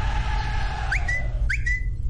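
Smartphone notification alert, two short rising chirps about half a second apart, each ending on a brief steady high tone, over a low steady hum. The alert signals a new appointment request.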